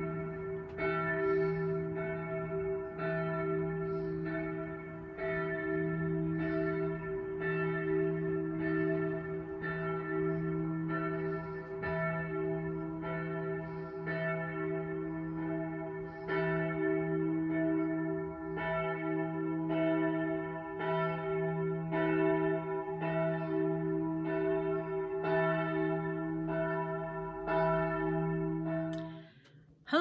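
Church bells ringing, several bells at different pitches, with a stroke about once a second and each tone ringing on into the next. The ringing cuts off just before the end.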